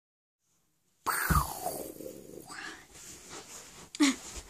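After about a second of silence, a sudden burst of rustling and bumping as a person moves onto the bed in front of the camera. A short sound falling in pitch comes at the start, followed by uneven handling noise.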